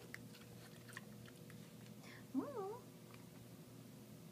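Potbellied pig chewing a piece of raw carrot, with faint crunching clicks through the first second and a half. About halfway through comes one short call that rises and wavers.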